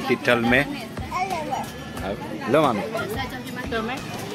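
Speech only: people talking in short phrases, with no other sound standing out.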